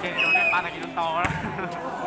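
Spectators' voices and shouts around a volleyball rally, with a sharp thud of the volleyball being hit just over a second in.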